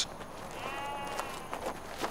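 A sheep bleating once, a short wavering call of about half a second, followed by a few faint clicks.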